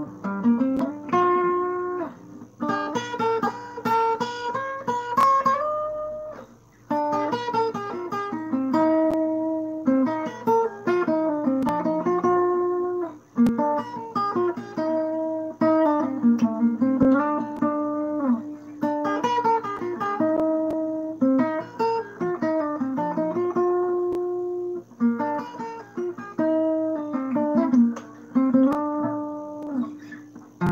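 Acoustic guitar played solo, picking a melody over held bass notes in phrases of several seconds, with brief breaks between some phrases.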